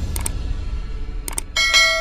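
Subscribe-button animation sound effects: two quick double mouse clicks, then a bright bell ding about one and a half seconds in that keeps ringing. A low rumble runs underneath.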